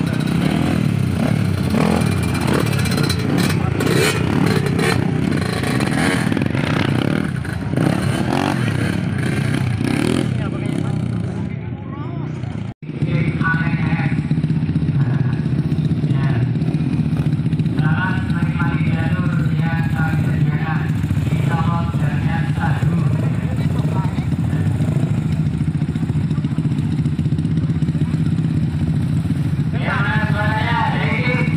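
Several dirt bike engines idling and revving together at a start line, with people talking over them. The sound breaks off for an instant a little before halfway, then the engines go on at a steadier idle.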